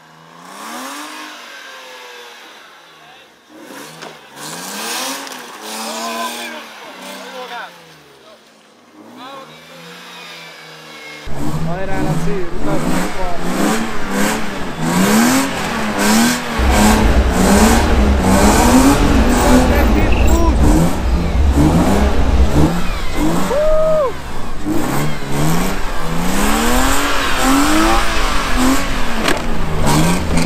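BMW E36 sedan's engine revving up and down repeatedly as the car is drifted on snow, each rev a quick rise and fall in pitch. It is faint at first and turns suddenly loud and close about eleven seconds in, with a rev climbing and dropping roughly every second.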